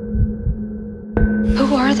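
Horror trailer sound design: a steady low drone under low pulses about three a second, broken by one sharp hit about a second in.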